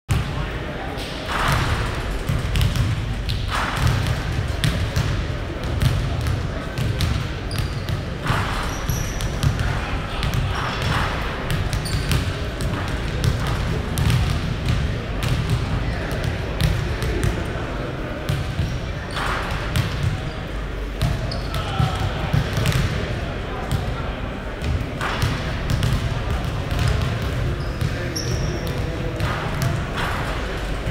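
Several basketballs bouncing irregularly on a hardwood gym floor, with chatter of voices in the large hall.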